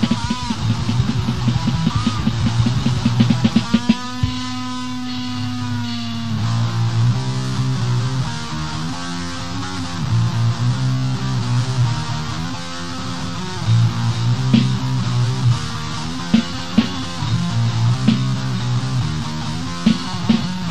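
Death metal from a guitar, bass-less power-trio-style lineup of guitar, drums and voice, heard as a raw live cassette recording: distorted guitar riffing over drums. About four seconds in a single note is held for about two seconds before the riffing resumes.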